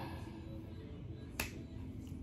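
A single sharp finger snap about one and a half seconds in, with a softer click right at the start.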